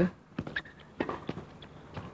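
Tennis rally: a few sharp knocks of the ball being struck by rackets and bouncing on the hard court, the strongest about a second in.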